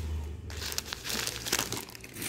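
Brown paper sheet in a folded saree crinkling as the fabric is turned over by hand, a dense crackling that starts about half a second in.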